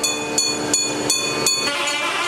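Traditional temple puja music: sharp metallic strikes, a little under three a second, over sustained ringing and droning tones.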